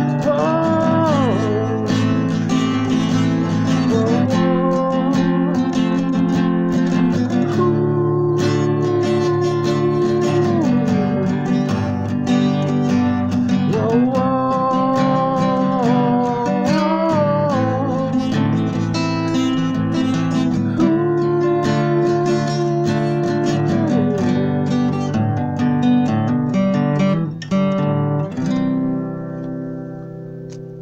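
Acoustic guitar strummed steadily, with a wordless sung melody of long held notes that slide between pitches over it. The playing thins out and gets quieter near the end as the song closes.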